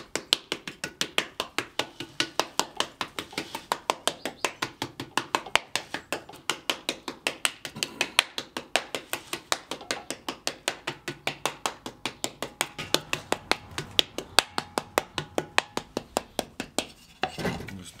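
A wooden paddle slapping damp clay that is being beaten thin over a pot form, in quick, steady strokes about four a second. The strokes stop near the end.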